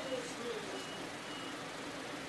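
Faint ballpark ambience between pitches: a low murmur of distant voices over background hiss, with three brief faint high beeps.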